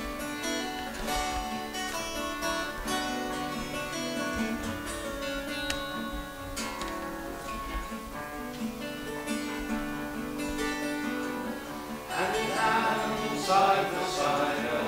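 Acoustic guitar playing a steady instrumental introduction; about twelve seconds in, singing voices come in and the music grows louder.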